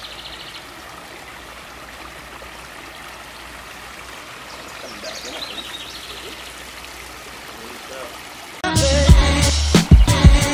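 Water trickling and running over rocks down a newly built pondless waterfall stream, a steady gentle splashing. About eight and a half seconds in, loud background music with a hip-hop drum beat cuts in abruptly.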